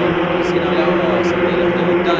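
Formula 4 single-seater race car engines running at speed, heard as a steady, even-pitched drone.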